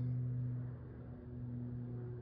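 Steady low electrical hum with a faint hiss underneath, heard while solder is melted onto a stripped wire end.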